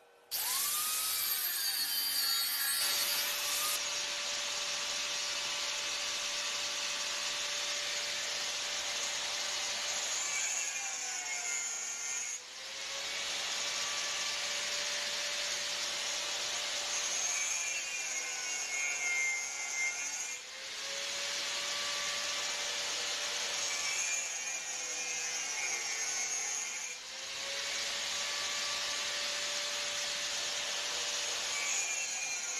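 Electric angle grinder with an abrasive disc cutting sheet metal, starting up abruptly at the start. Its steady motor whine sags in pitch under load about twelve seconds in and twice more later, picking back up each time.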